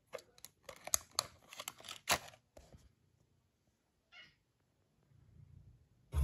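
Plastic clicks and knocks as a USB plug is pushed into a power bank and the cable is handled, loudest about one and two seconds in. A single short higher sound follows about four seconds in, and a faint low hum starts near the end.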